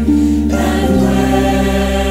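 Worship music: a choir singing long held notes over instrumental accompaniment, the chord changing about a second in.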